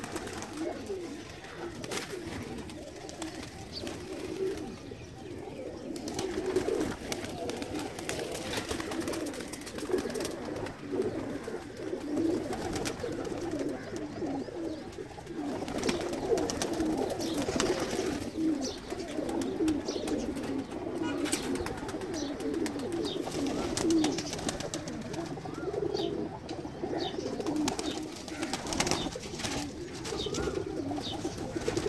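A loft full of domestic pigeons cooing continuously in an overlapping chorus, with occasional brief wing flaps as birds fly about.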